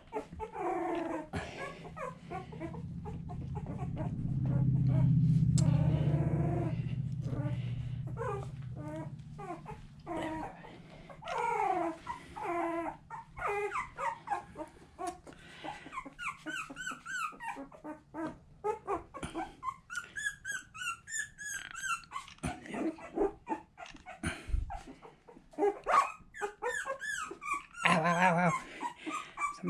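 Two-week-old boxer puppies whimpering and squealing over and over in short, high, wavering cries. A low rumble swells a few seconds in and fades again.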